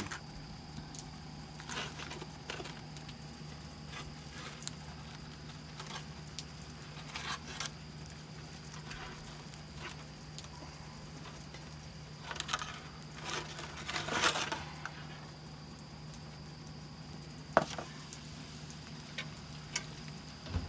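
Scattered soft clicks and rustles of hands working gear at a smoker, over a steady low hum; a sharper click comes near the end.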